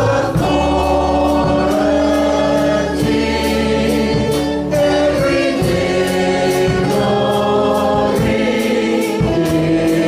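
Live worship band and congregation singing a gospel worship song together, with a steady beat.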